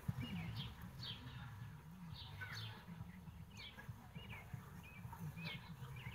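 Small birds chirping faintly, short high calls repeating about once or twice a second, over a low background rumble.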